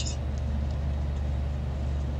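A steady low hum with no change in level and no other sound over it.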